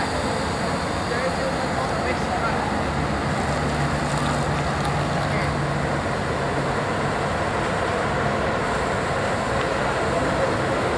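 Parked Scania L113CRL city bus with its diesel engine idling steadily, a low hum that grows stronger for a few seconds in the middle.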